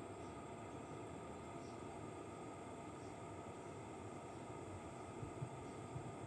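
Faint, steady outdoor background hiss with a few faint high chirps, and two soft knocks a little after five seconds in.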